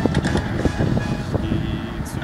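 Scrapping of locomotive 354.004: metal knocks and crunches as grapple excavators tear into its body, over the steady running of the heavy machines' engines. A steady whine starts near the end.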